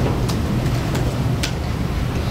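Steady low hum of a room's ventilation, with a few faint clicks of laptop keys being typed, one about a quarter second in and another at about a second and a half.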